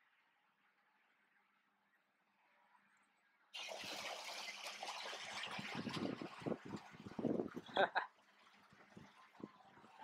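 Canada geese splashing and beating their wings as they run across the surface of a lake, a busy churn of splashes that starts suddenly about three and a half seconds in and thins out near the end.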